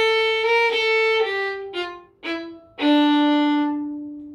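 Solo violin playing a short slow phrase: a note repeated in slurred bow strokes, then a stepwise run down to a long held low note that fades out near the end.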